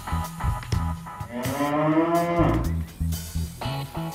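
A young Brangus bovine mooing once, one long call of about a second and a half that rises a little and then falls, over background music with a bass-and-guitar beat.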